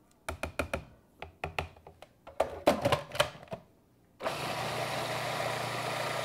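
A run of irregular clicks and knocks of a spatula against the plastic food processor bowl and its lid being fitted, then about four seconds in the food processor's motor starts and runs steadily with a low hum, pureeing the squash pie filling.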